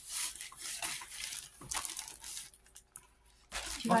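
Clear plastic packaging bag rustling and crinkling as it is torn open and handled, in a run of bursts that stop about three seconds in.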